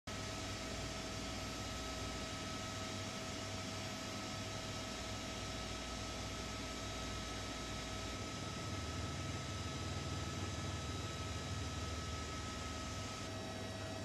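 Steady drone and hiss of the helicopter carrying the aerial camera, with a couple of steady hum tones over it; the low part of the drone shifts about eight seconds in.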